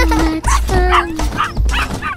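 Children's song music with a steady bass beat, over which a cartoon puppy yips and barks several times.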